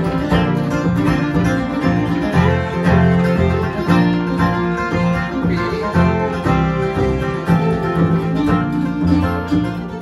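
Acoustic bluegrass band playing an instrumental intro: fiddle, two acoustic guitars, mandolin and upright bass over a steady beat.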